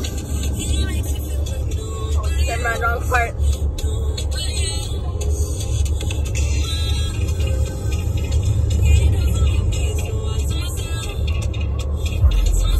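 Steady low road rumble of a moving car, heard from inside the cabin. Faint music and singing run over it, with a wavering sung line about two to three seconds in.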